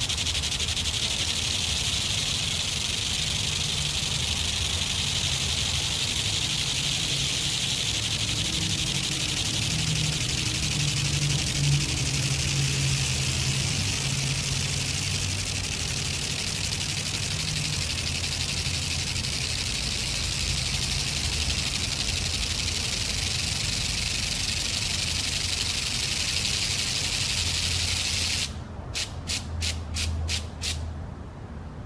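ANNAX flip-dot display panel with its small magnetic discs flipping over continuously as text scrolls across it: a dense, steady mechanical clatter. It stops abruptly near the end, leaving a few separate clicks.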